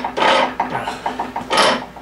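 Ratcheting and rasping metal strokes as a Johnson 35/40 hp outboard is turned over by hand with a half-inch tool, plugs out: two scraping strokes with a run of fast clicks between. This clicking is what tells the mechanic that the drive shaft is too short to engage.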